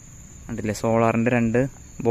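Crickets chirring in a steady, unbroken high-pitched drone, with a man's voice speaking for about a second in the middle.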